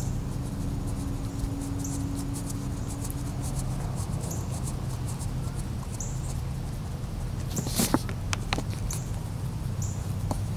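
A wax crayon scratching in quick strokes on a coloring-book page, with a few sharper taps about eight seconds in. Short high chirps come every couple of seconds over a steady low background hum.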